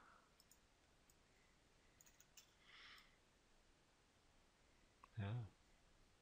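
Near silence with a few faint computer mouse clicks in the first half, and a short sound from a voice shortly before the end.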